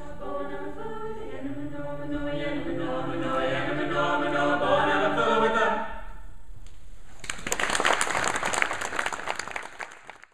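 Mixed-voice a cappella choir singing in harmony, swelling to a final held chord that ends about six seconds in. About a second later an audience breaks into applause, which fades out at the very end.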